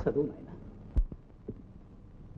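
A man's voice briefly, then a single sharp knock about a second in, with a fainter knock half a second later, over a low hum.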